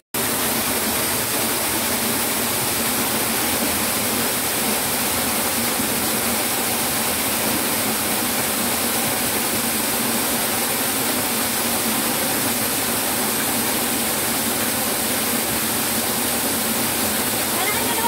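Steady rushing of a rocky mountain stream, running evenly throughout.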